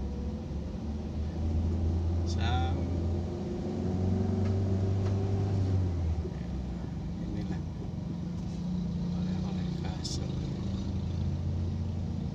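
Car interior noise while driving: a steady low engine and road rumble heard inside the cabin, with a brief pitched sound about two and a half seconds in.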